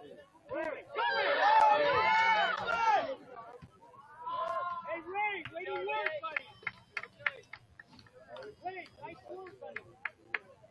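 Several voices shouting and calling out, loudest and overlapping about one to three seconds in, then shorter calls. A few sharp knocks come in the second half.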